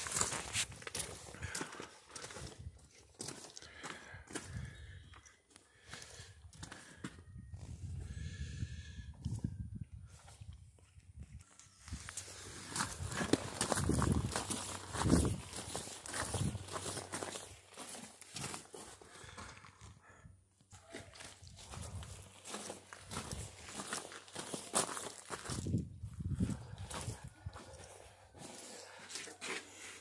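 Irregular footsteps on gravel mixed with camera handling noise, loudest about halfway through.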